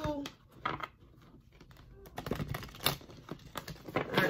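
A deck of cards being shuffled by hand, a run of quick papery clicks and slaps. The clicks thin out for a second or so, then come thicker near the end.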